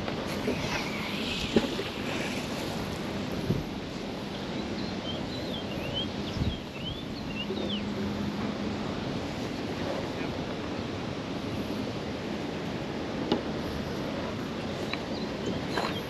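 Steady wind noise on the microphone over river water lapping at the dock, with a few short high chirps a few seconds in and occasional light knocks as the magnet rope is thrown out and hauled back in.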